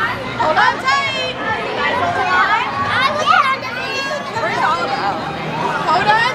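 Overlapping high-pitched voices, children talking and calling out over each other with background chatter, none of it clear as words.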